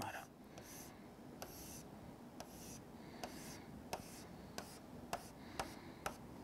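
Stylus tapping and sliding on the glass of an interactive touchscreen board as diagonal hatch lines are drawn: a faint tick with each stroke, about two a second, with light swishes of the tip between.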